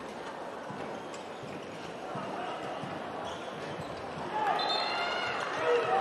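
A handball bouncing on an indoor court under a steady arena crowd murmur. High squeaks come in about four and a half seconds in, and the crowd noise rises toward the end.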